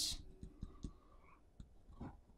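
Pen writing a short word on paper: faint, scattered ticks of the pen tip against the page.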